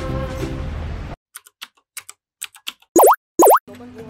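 Background music cuts off about a second in, followed by a string of light typing-like clicks and two loud boing-like sound effects, each dipping and rising in pitch, about half a second apart. New background music starts near the end: an edited title-card sting.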